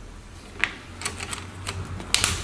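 Plastic back cover of a Xiaomi Mi-One S smartphone being pressed onto the phone, its clips snapping into place: one click about half a second in, then a quick irregular run of light clicks in the second half.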